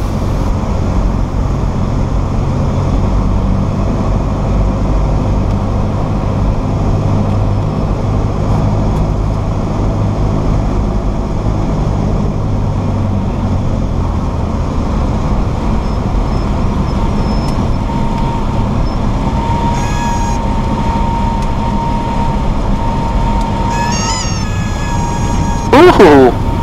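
Cessna 172SP cabin during the landing: the four-cylinder Lycoming engine drones steadily, then eases off about halfway through as the power comes back for the flare. A steady high tone, the stall warning horn, sounds over the last few seconds, with a few short chirps near the end at touchdown.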